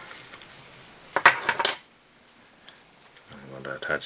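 A short metallic clatter of small hand tools being handled and set down on a fly-tying bench, about a second in, followed by a few faint clicks.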